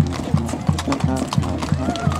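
Horses' hooves clip-clopping on an asphalt road, sharp strikes coming several times a second, heard over music and voices.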